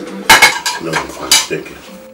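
China and cutlery clinking at a table: teacups, saucers and spoons knocking together in a few sharp clinks, the loudest pair near the start and another a little past halfway.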